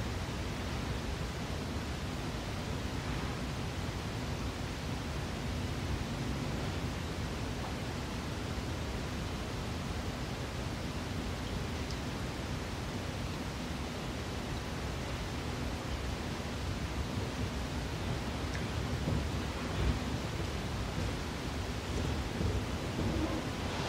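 Steady hiss and low rumble of recording background noise, with no speech or singing.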